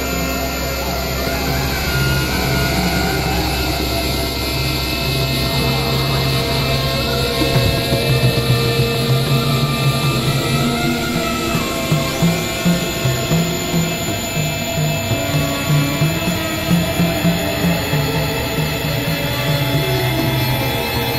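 Experimental electronic drone music from layered synthesizers: a dense, steady wall of held tones and noise. From about a third of the way in, a low pulsing figure comes in and the loudness swells and dips about twice a second.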